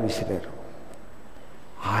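Speech only: a man lecturing says one short word ending in a hiss, then pauses for about a second and a half before speaking again near the end.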